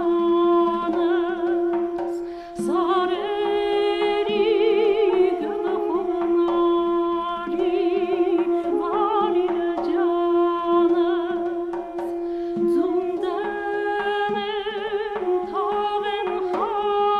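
An Armenian folk tune played by a trio of duduks. One duduk holds a steady drone, breaking briefly twice, under an ornamented melody with vibrato.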